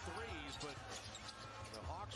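Faint NBA game broadcast audio: a basketball being dribbled on a hardwood court, with a commentator's voice low underneath.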